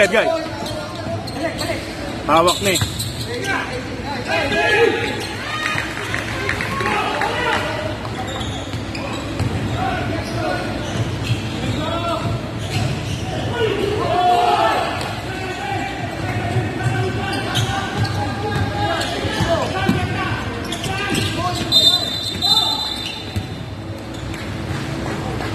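Basketball game in a large, echoing gym: a basketball bouncing and thudding on the hardwood court, with players and onlookers shouting and calling out over it.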